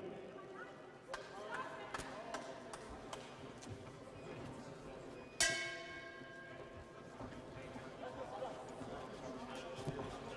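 Boxing-arena crowd noise with scattered thuds of punches and footwork on the ring canvas. About five and a half seconds in, a single sudden ringing clang stands out and fades over about a second.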